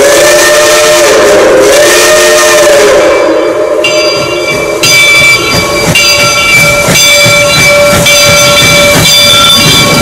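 Reading Blue Mountain & Northern 425's steam whistle blowing one long chord-like blast that bends in pitch and stops about three seconds in. After a short lull, the approaching train's running sound follows, with steady high ringing tones and scattered knocks.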